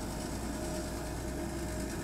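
City bus engine running as the bus drives slowly away: a steady low hum with a faint constant tone above it.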